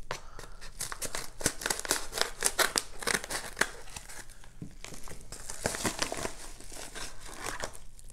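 A padded kraft-paper mailer crinkling as it is handled and opened: a dense run of quick, irregular crackles.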